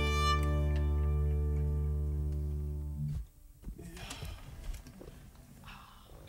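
The closing chord of an acoustic song ringing out on guitars and violin, slowly fading, then damped suddenly about three seconds in; after that only faint small rustles of the players.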